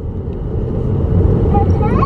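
Steady low rumble of car cabin noise, engine and road sound heard from inside the car, with a child's voice starting faintly near the end.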